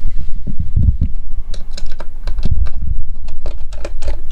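Irregular small clicks and taps of a Phillips screwdriver and the metal base of an AirPort Extreme base station being handled on a wooden floor, over low handling bumps.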